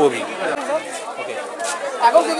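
A man's voice ends a phrase at the start, then faint indistinct chatter of other people's voices in the background.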